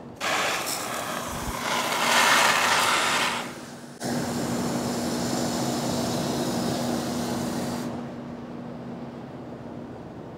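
Hose spray wand running water into opened plastic grow bags of shiitake blocks to soak them, a steady hiss that breaks off briefly about four seconds in and eases off near the end, with a faint steady hum beneath.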